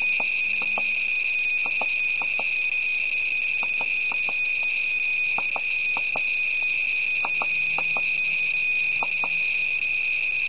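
A Gamma Scout Geiger counter's piezo beeper sounds a steady, high-pitched electronic tone without a break. Short sharp clicks come at irregular intervals underneath it, often in pairs.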